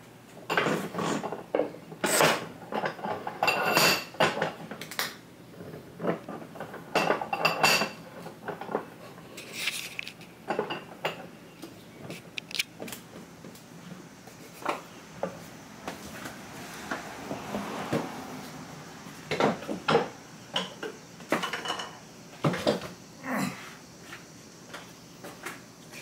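Wooden guitar body blanks and metal tools being handled on a wooden workbench: an irregular string of knocks and clatters, some with a short metallic ring. About seventeen seconds in there is a longer scrape.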